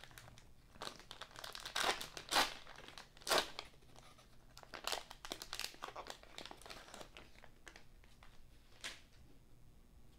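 Plastic wrapper of a trading-card rack pack crinkling and tearing as it is opened, in a string of short crackles that are loudest in the first few seconds.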